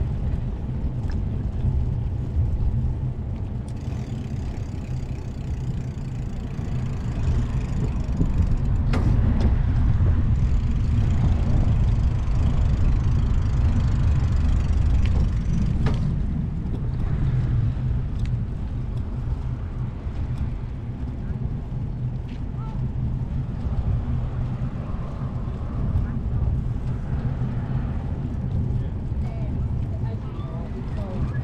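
Steady wind rumble buffeting the microphone while cycling, with a louder gusty stretch through the middle and a few faint ticks over it.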